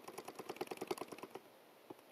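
Computer mouse scroll wheel ticking rapidly as code is scrolled on screen: a faint, even run of small clicks that stops about one and a half seconds in.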